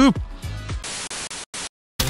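A burst of hiss-like static about a second in that cuts in and out, then the sound drops to dead silence near the end: an audio glitch from a malfunctioning camera.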